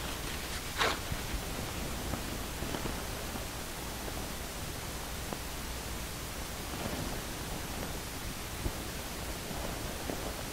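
Steady hiss of background room and microphone noise, with a brief faint rustle about a second in.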